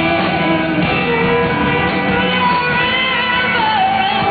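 Rock band playing live, with electric guitars, drums and singing that holds long, wavering notes.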